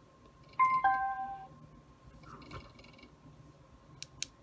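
Onforu portable Bluetooth speaker sounding a two-note falling chime about half a second in, its prompt tone as it pairs and connects to a phone over Bluetooth.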